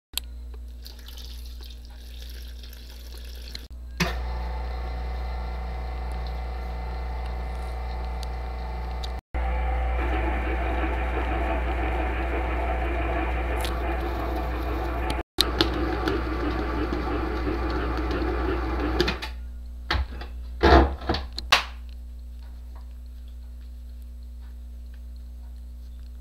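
Commercial stand mixer running steadily, its dough hook kneading bun dough in the steel bowl over a low motor hum. The mixing stops a few seconds before the halfway mark of the last third, followed by a few sharp knocks.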